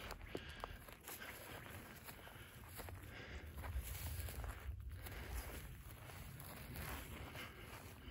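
Faint footsteps on dry grass and dirt, with a few small irregular ticks over a faint low rumble.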